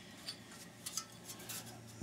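A few faint clicks and light clinks of metal scrap parts being handled and picked up, including a finned aluminium computer heatsink.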